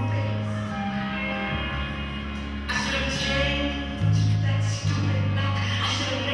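Music with a deep bass line that changes note every second or so, under sustained higher tones.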